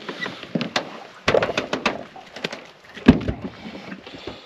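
Handling noises in an aluminium boat: a run of clicks, knocks and clatters, with two heavier thumps on the hull, one a little over a second in and one about three seconds in.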